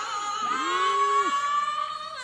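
Female gospel vocal group singing live: a high note is held from about half a second in, while a lower voice slides up, holds briefly and drops away.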